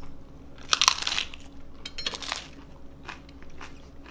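A person bites into a crisp tortilla tostada loaded with toppings. There is a loud crunch about a second in and another just after two seconds, followed by smaller crunches of chewing.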